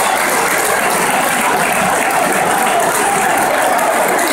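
Large football stadium crowd cheering and chanting, a loud steady din from the packed stands.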